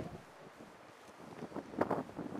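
Wind on the microphone, a faint steady rush, with a brief louder burst near the end.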